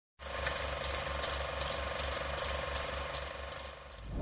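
Intro sound effect of mechanical ticking, like a clockwork or ratchet mechanism, about two and a half ticks a second over a steady hum with a low pulse in time with the ticks, easing off near the end.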